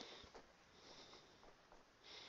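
Near silence: room tone with faint breaths, soft hisses about once a second.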